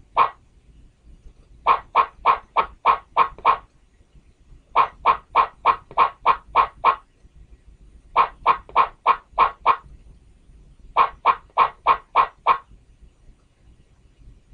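Presentation-software animation sound effect: short pitched blips at about three to four a second, in four separate runs of six to eight, each run marking a line of text appearing on the slide.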